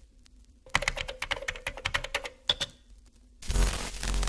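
Rapid computer keyboard typing, a dense run of clicks lasting about two seconds. Near the end it is cut off by a sudden loud burst of static noise, a glitch effect.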